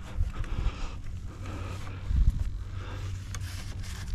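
Handling noise as a foam RC airplane is taken in hand: low rumbling and a few soft knocks, strongest about two seconds in, over a faint steady hum.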